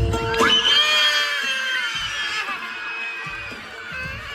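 A person screaming: one long high-pitched scream starting about half a second in and easing off after a couple of seconds, over steady background music.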